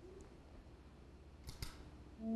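Near silence, with two faint clicks close together about a second and a half in.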